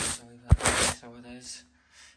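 Handling noise with a sharp knock about half a second in, followed by a brief, faint murmur of a person's voice.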